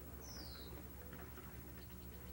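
Faint background with a steady low hum, and one short high chirp falling in pitch about a quarter of a second in.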